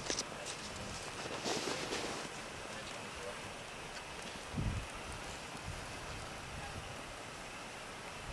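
Outdoor background hiss with wind and handling noise on the camera microphone: a few clicks at the start, a brief rustle about a second and a half in, and one low buffet about four and a half seconds in.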